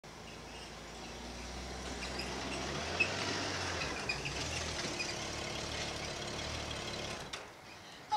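A touring motorcycle trike running at low speed as it rolls closer across grass, its engine a low steady note that dies away near the end as it comes to a stop. Birds chirp in the background.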